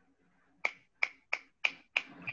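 Finger snapping as applause after a performance: five sharp snaps, about a third of a second apart, starting a little over half a second in.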